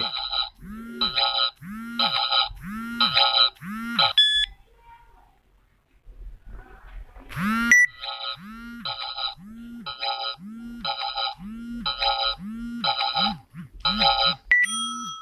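Electronic scanning sound effect from a phone's blood-sugar test app: a short warbling beep repeating about every half second. It breaks off about four seconds in, then after a rising sweep it resumes and quickens near the end.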